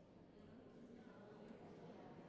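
Near silence: a faint, indistinct murmur of distant voices.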